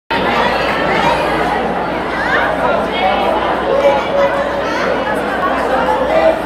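Many overlapping voices chattering in a large hall, a crowd of students talking over one another.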